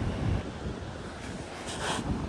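Wind buffeting the microphone, a low uneven rumble, over the steady wash of ocean surf.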